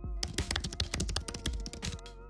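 A rapid run of keyboard typing clicks, roughly a dozen a second for most of the two seconds, over steady background music with long held tones.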